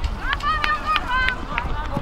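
Short shouted calls from voices on a football pitch, several brief raised calls one after another.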